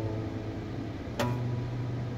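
A single note or chord plucked on an acoustic guitar about a second in, ringing out, over a steady low hum inside a car's cabin.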